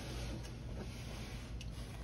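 Quiet room tone with a steady low hum and no distinct event.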